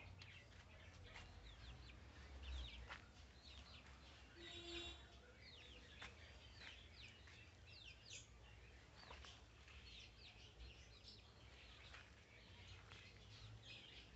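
Faint birds calling: many short, high chirps scattered throughout, with one brief, fuller pitched call about four to five seconds in.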